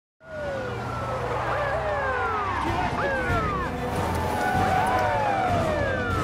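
Several police car sirens wailing at once, their tones overlapping and gliding mostly downward, over a steady low rumble.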